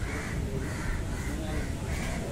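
A bird giving harsh, repeated calls, about two a second, over a steady low background rumble.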